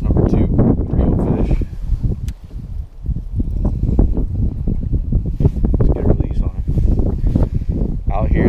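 Wind buffeting the microphone, with a man's voice talking indistinctly under it.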